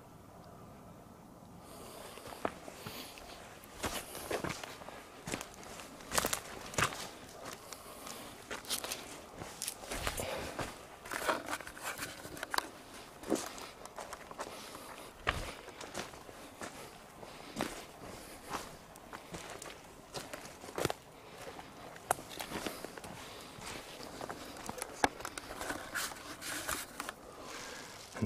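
Footsteps on a forest floor of leaf litter, twigs and roots, an uneven walking pace of roughly one to two steps a second, starting about two seconds in.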